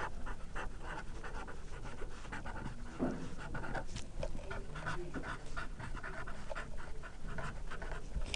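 Felt-tip marker writing on a pad of paper: a faint, irregular string of short scratching strokes as the letters are formed.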